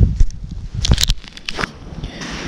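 Rustling and crackling handling noise from gloves and winter clothing near a body-worn camera, with a few sharp clicks about a second in.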